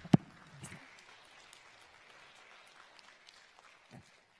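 Applause from the congregation. It opens with a loud hand clap close to the microphone, then a spread of clapping that thins out toward the end. A soft thump comes right at the end.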